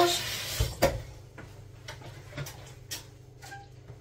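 Tap water running briefly as hands are washed, cut off about a second in with a knock, followed by a few faint clicks and taps.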